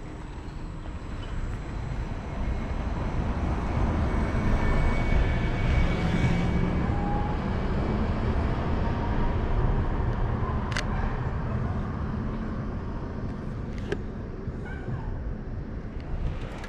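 Low rumble of city traffic that swells over the first few seconds and slowly fades, with one sharp click about eleven seconds in and a fainter one near the end.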